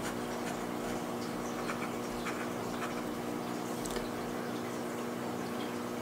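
A fountain pen's steel nib scratching faintly across paper in short strokes as lines and figures are written, over a steady low hum.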